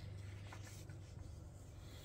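Faint paper rustle of a glossy comic-book page being turned by hand in a thick hardcover omnibus, over a low steady hum.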